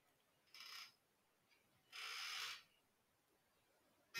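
Near silence: room tone, broken by two faint, brief hissy noises, one about half a second in and a slightly longer one about two seconds in.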